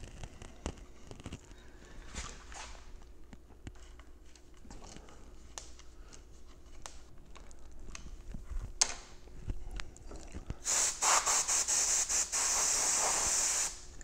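Small clicks and scrapes as a hand screwdriver drives the clip screws into a wooden ground-glass holder. About eleven seconds in, a much louder spraying hiss comes in a few short spurts and then a steady blast of about three seconds, which stops suddenly.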